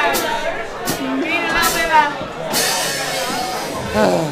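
Voices shouting and singing over a live rock band's guitars and drums in a pub room, with a burst of bright noise lasting about a second, starting two and a half seconds in.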